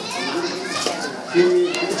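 Children's voices chattering and calling out, mixed with other voices in the room.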